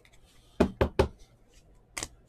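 Three quick, loud knocks on a tabletop as cards are handled, about a fifth of a second apart, followed by a lighter, sharper click near the end.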